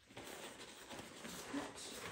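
Rustling and shuffling of clothes and packing bags as they are pressed into a hard-shell carry-on suitcase.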